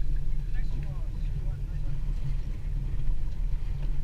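Steady low rumble on a small boat at sea, with faint, indistinct voices of the anglers over it.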